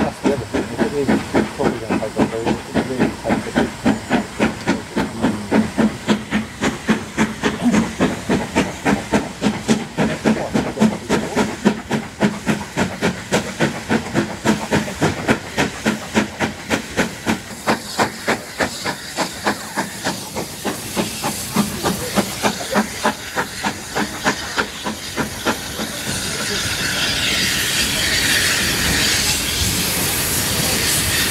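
Steam locomotive working, its exhaust beating steadily at about three chuffs a second as it approaches. Near the end the beats give way to a loud, steady hiss of steam as the engine passes close by.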